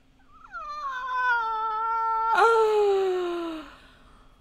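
A person's long, high-pitched wail, sliding down in pitch, with a crack in the voice about two and a half seconds in.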